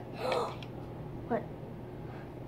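A girl gasps in surprise, a short breathy intake, then about a second later says a quick "What?".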